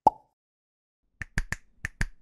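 Outro sound effects for an animated logo. It opens with one sharp hit and a short ringing tone. About a second later comes a quick, uneven run of snap-like clicks.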